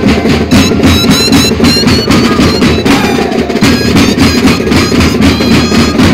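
Moseñada band music: a mass of mohoceño flutes playing a held, wavering melody over drums beating a steady rhythm.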